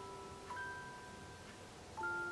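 Soft background music: a slow melody of ringing, bell-like mallet-percussion notes, a new note struck about half a second in and held.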